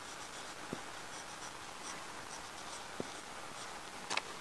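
Marker pen writing on a whiteboard: faint, short scratchy strokes, with two soft knocks, one under a second in and one about three seconds in.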